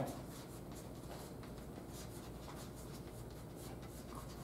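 Chalk being written on a blackboard: faint, irregular scratches and taps as the strokes are made.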